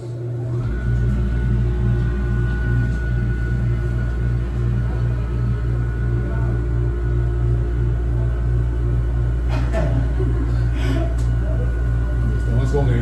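Liquid-nitrogen whole-body cryotherapy cabin running as the session starts: a steady low hum sets in about half a second in, joined by a steady high whine, while the cold nitrogen vapour fills the cabin.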